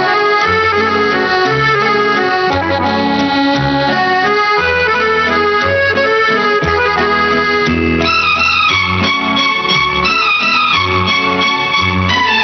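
Instrumental passage of a 1960s Hindi film song, a melody over a steady bass line; about eight seconds in a wavering melody line comes in.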